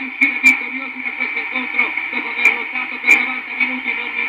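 Italian football TV commentary: a man's raised voice carrying on over steady background noise. The audio is thin and narrow-band, like a radio, with a few sharp clicks.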